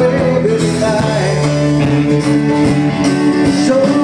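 Live country-rock band playing: acoustic guitar, electric bass, drums and keyboard, with a singer's voice over the top.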